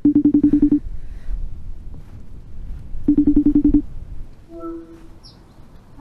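iPhone FaceTime outgoing-call ringing tone: two bursts of a fast-pulsing tone, each under a second long and about three seconds apart, sounding while the call waits to connect.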